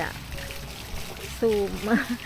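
Garden fountain's water splashing and trickling steadily into its stone basin, under a woman's speech.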